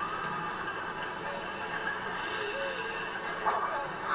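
TV episode soundtrack playing quietly: a steady low background with a few faint, indistinct voice-like sounds.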